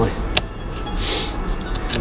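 Gloved hands scraping and rustling in loose soil around a stoneware flagon as it is eased out of the ground, with a single sharp click about a third of a second in and a short rustle about a second in.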